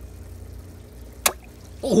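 A single sharp snap at the water's surface about a second in, as an Oscar cichlid strikes at an earthworm held just above the water, over a steady low hum.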